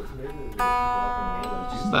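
1963 Gibson ES-335 semi-hollow electric guitar played. A chord is picked about half a second in and left to ring out for over a second.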